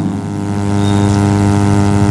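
A loud, steady hum made of evenly spaced low tones that does not change, with a faint short high squeak about a second in.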